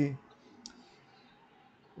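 A single short, sharp click a little over half a second in, after the tail of a drawn-out spoken "e...", then quiet room tone.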